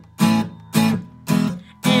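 Acoustic guitar strummed in a steady rhythm, about two strums a second, between sung lines of a song.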